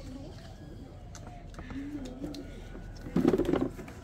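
Low background voices with a few light clicks of utensils at a food-preparation table, and one short, loud voice-like call about three seconds in.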